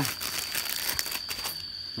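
Rustling and crinkling of the plastic packet of biological filter cotton as a sheet of the filter pad is pulled out, a run of small irregular crackles and clicks.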